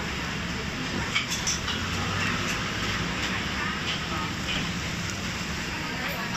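Busy eatery ambience: a steady background rumble with indistinct voices and a few light clicks, the sharpest just after a second in.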